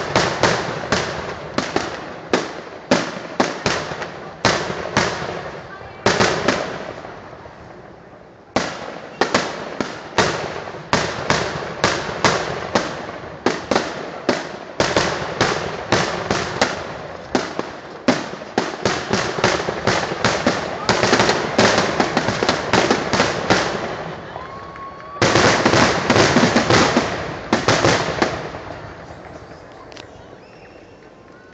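Fireworks finale: aerial shells bursting in rapid succession, several sharp bangs a second. There is a short lull about seven seconds in, a dense, almost continuous barrage near the end, and then the bangs die away.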